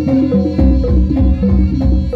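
Live Javanese gamelan music accompanying a kuda lumping (tari kepang) dance: kendang drums and struck metal percussion playing a quick, even beat.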